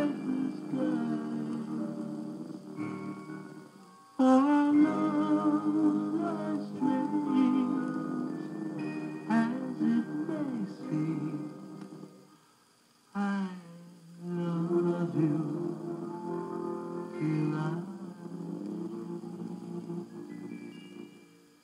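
A 1950s vocal-group record playing on a turntable: sung voices in harmony, dropping out briefly about four seconds in and again, almost to silence, about two-thirds of the way through before the singing resumes.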